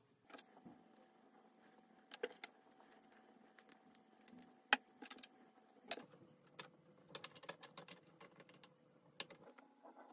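Scattered light clicks and taps of small hard objects being handled, irregular and sparse, over a faint steady hum that drops in pitch about six seconds in.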